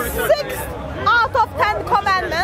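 A person talking, with crowd chatter behind.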